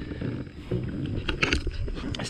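Wind rumbling on the microphone of a camera carried on a moving bicycle, with a faint short sound about one and a half seconds in.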